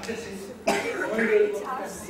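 Speech: an actor's voice delivering lines on stage, animated, with a sudden loud start a little over half a second in.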